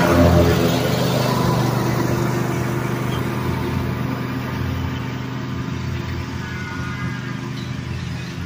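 Cub Cadet Ultima zero-turn mower's engine running steadily with its cutting deck engaged, growing fainter as the mower drives away.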